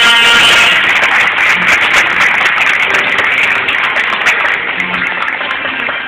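An audience applauding, a steady patter of many hands, with background music underneath.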